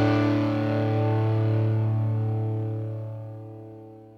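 The closing chord of a rock song, on distorted electric guitar, held and slowly fading out.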